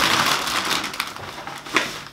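Plastic shopping bag and packaging rustling and crinkling as hands rummage through it. It is loudest at first, dies away, and gives one sharper crackle near the end.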